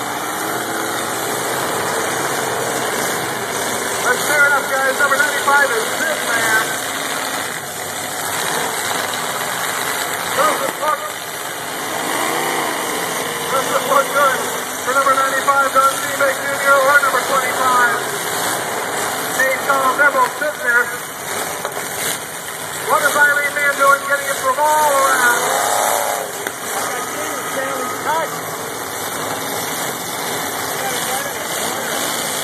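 Several demolition derby cars' engines running and revving together in the arena, a steady loud din, with voices heard over it in short spells.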